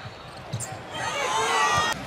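Basketball game sounds on a hardwood court: a few low ball bounces, then from about a second in a burst of high, wavering sneaker squeaks as players cut and stop.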